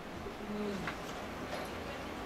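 A short, faint, low hummed murmur of a voice, like a listener's "mm", over quiet room tone, with a faint click about a second in.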